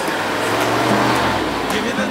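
1967 Corvette Stingray L79 (327 small-block V8) driving past: engine and tyre noise swell to a peak and fall away near the end, over background music.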